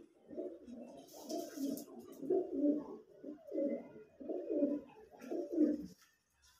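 Domestic pigeons cooing: a continuous run of low coos, one about every half second to a second.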